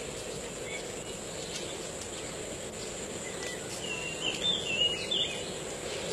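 Steady outdoor background noise with a thin, high constant tone. A bird gives a short series of warbling chirps about three and a half to five seconds in.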